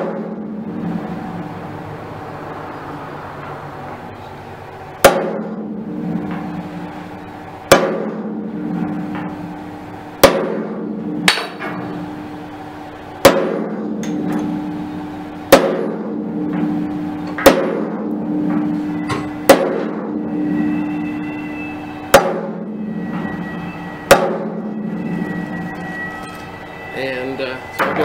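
Hammer striking a center punch against the steel plate of a locomotive saddle tank: nine sharp metallic blows, one every two to three seconds, each leaving the tank ringing briefly. The punch is marking a row of dots along the outline of a patch to be cut out with a torch.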